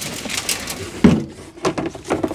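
A plastic tub of potting compost being turned upside down into a wheelbarrow and lifted off, with rustling and scraping of plastic and soil and one heavy thud about a second in as the root-bound block of compost drops out.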